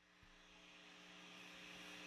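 Near silence: faint idle hum and hiss from a Landry LS100 G3 valve guitar amp with EL34 power valves, powered up with nothing being played, slowly getting louder.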